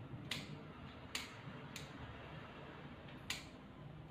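Dog nail clippers cutting a dog's toenails: four sharp snips, unevenly spaced.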